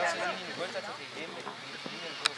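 Voices calling out on a football pitch: a drawn-out shout right at the start that trails off into fainter, scattered calls.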